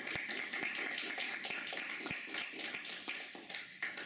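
A small audience applauding, many hands clapping out of step, dying away near the end.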